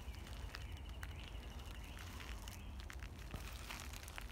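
Faint scattered crackles of footsteps on dry pine needles.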